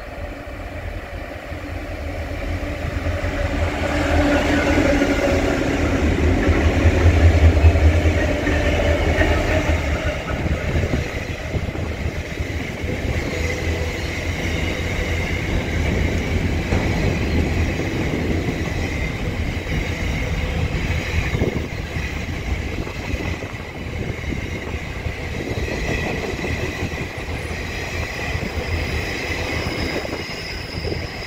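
A container freight train hauled by four diesel-electric locomotives goes past at speed. The locomotives' engines swell to a loud low rumble about seven seconds in, then the container wagons roll by with a steady rumble and clicking over the rail joints. Thin high-pitched wheel squeal comes in during the later part.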